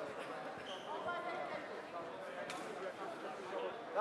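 Voices and chatter echoing in a large sports hall, with a few dull thumps in the first second and a sharp click about two and a half seconds in.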